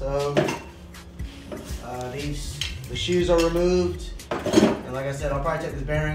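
Metal rear drum-brake parts clinking and clattering as they are handled, with a few sharper clanks, the loudest a little past the middle. Background music with a singing voice plays under it.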